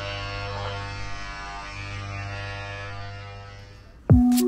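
Intro music: a sustained low droning chord with many overtones, held steady and fading out near the end.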